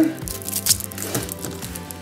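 Foil wrapper crinkling and crackling in scattered small bursts as a thin pin picks and tears it open, over steady background music.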